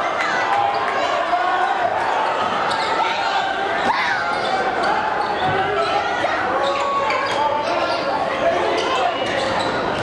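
A basketball being dribbled on a hardwood gym floor amid steady chatter and calls from a crowd, echoing in a large gymnasium.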